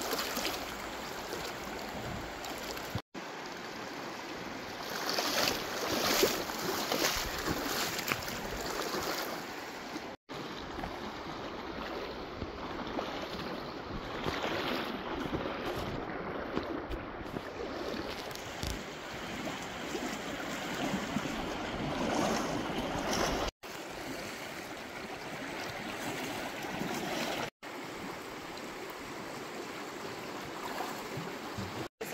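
Shallow river current rushing steadily over rocks and around a wader's legs. It is a little louder a few seconds in and cuts out for an instant four times.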